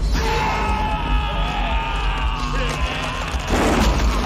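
Film soundtrack: dramatic score music with a man's drawn-out yelling over it, then a short noisy crash near the end.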